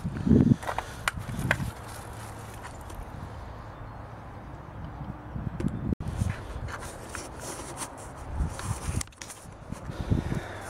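Footsteps and handheld-camera handling noise: a few soft, irregular thumps and rustles as the camera is carried and turned. A low steady hum runs underneath.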